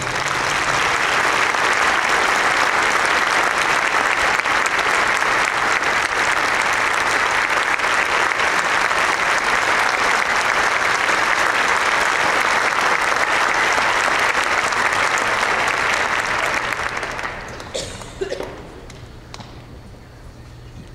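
Audience applauding steadily, dying away about seventeen seconds in, followed by a few scattered knocks and clicks.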